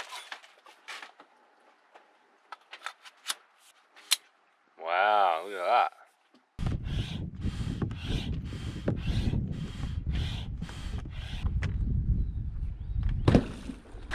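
Hand pump inflating an inflatable stand-up paddle board: regular pump strokes about two a second, with wind rumbling on the microphone. Before it, a few light clicks of the paddle being handled and a brief voice about five seconds in.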